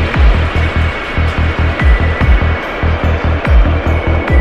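Psytrance: a driving electronic kick drum on a steady beat, with a rolling synth bassline pulsing between the kicks, a thin sustained high synth tone and light percussive ticks.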